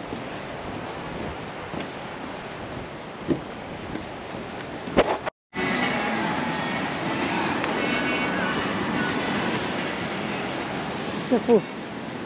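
Steady outdoor wind hiss, broken by a moment of dead silence about five seconds in; then a louder steady rush of surf on a beach with faint distant voices.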